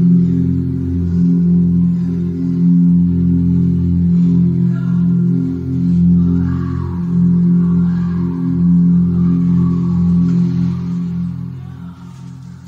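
Electronic keyboard playing slow, sustained low chords with heavy reverb, the notes dying away near the end.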